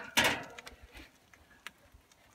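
Wire cooking grate set down on a small charcoal grill: one loud metallic clank just after the start, then a few light clicks as it settles.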